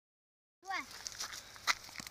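Metal clicks and scuffs as a leash clip is unfastened from a whippet's collar and the dogs scramble off over gravel, with one sharp click louder than the rest near the end. A brief falling cry comes just before the clicks.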